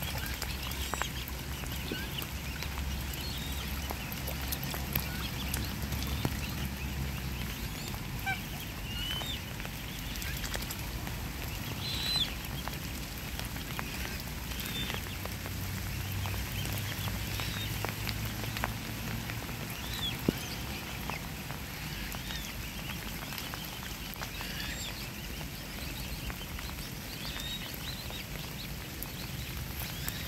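Mute swan cygnets peeping: many short, high calls scattered throughout as the brood feeds at the water's edge, with a few small ticks among them.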